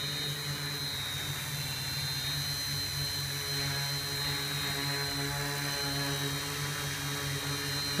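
Hobby King Alien 560 quadcopter's electric motors and propellers hovering in place, a steady buzzing drone whose pitch barely changes, with a thin high whine over it.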